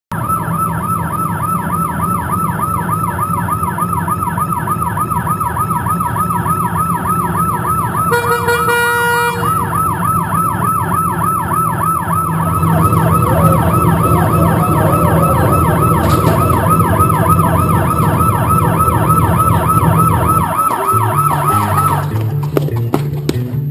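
Emergency siren in a fast yelp, its pitch rising and falling about three times a second, over a low steady rumble. About eight seconds in, a steady pitched tone sounds for a second and a half. Near the end the rumble gives way to a beat of low notes.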